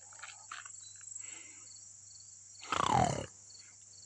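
Steady high-pitched insect chorus. Near the end it is cut across by one short, loud, rough cry lasting about half a second, falling in pitch.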